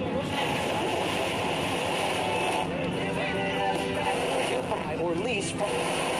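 Many overlapping, indistinct voices over a steady hiss, with no single voice standing out.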